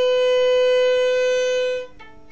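Violin bowing one long, steady B on the A string in first position, a note of the G major scale, stopping shortly before the end. The tuner reads it at about 503 Hz, a little sharp of the 497.2 Hz target in the practice table.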